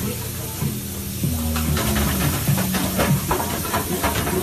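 Steady hiss from cooking at a professional gas range under its extractor hood, with low held musical notes underneath. A run of clicks and clatters sets in about one and a half seconds in.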